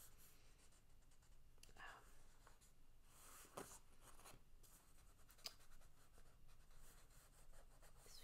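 Faint pencil sketching on paper: soft scratchy strokes, with a few sharper ticks of the point against the page.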